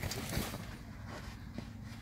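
Faint handling noise: light rustling and a few soft knocks over a low rumble.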